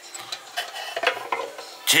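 Younion money safe, a small plastic cash box, being handled as its door is swung open: a run of light, irregular clicks and clinks.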